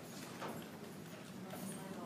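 Faint, indistinct voices in a large echoing room, with a couple of light clicks or knocks.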